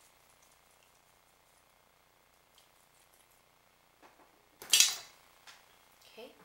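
Hair being backcombed with a comb: faint scratchy strokes, then one brief, loud rasp about three-quarters of the way through.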